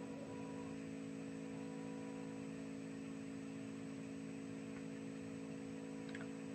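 Faint, steady electrical hum with light hiss: room tone through the meeting's sound system while nobody speaks.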